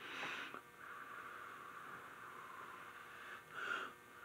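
A person blowing across a bowl of hot, freshly microwaved energy drink to cool it: a short puff, then one long, even blow of about three seconds, and another short puff near the end.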